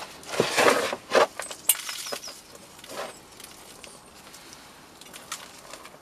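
Dry sieved compost being scooped with a small plastic plant pot and tipped into a plastic seed tray: a few short bursts of rustling and scraping, the loudest in the first second, with a sharp click soon after.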